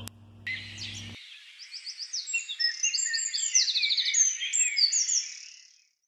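Birds singing, with many overlapping quick chirps and trills. The song grows fuller through the middle and fades out near the end.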